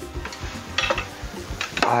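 Metal tongs and a knife clinking and scraping against a baking tray as grilled lamb is pulled off its skewer, with a few sharp clinks about a second in, over background music with a steady beat.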